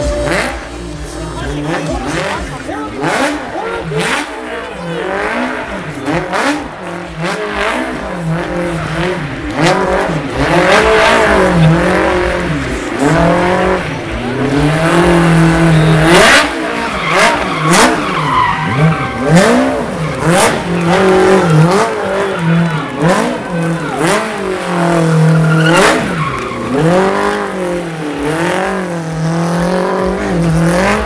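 Smart Fortwo city car's small engine revved hard and let drop over and over, rising and falling roughly once a second, as the car spins its rear tyres in smoky donuts, with tyre noise underneath.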